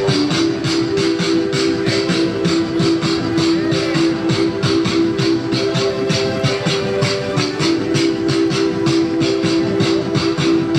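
Live beatboxing through a microphone, layered with a loop station and played through a small amplified speaker: a steady fast beat of sharp vocal percussion hits over a held low tone.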